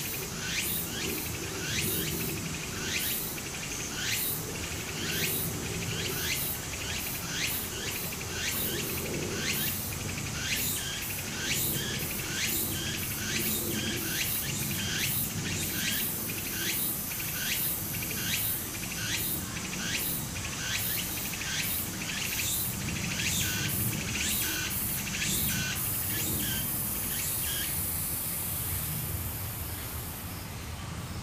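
Cicadas calling in a rhythmic series of short high notes, a couple a second, giving way near the end to a steady high buzz. Underneath is the low, steady trickle of a shallow stream.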